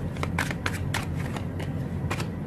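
Tarot cards being shuffled by hand: a quick, irregular run of short card snaps and flicks over a low steady hum.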